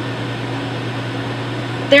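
A steady low hum with an even hiss behind it, a constant machine-like background with no other events; a woman's voice starts right at the end.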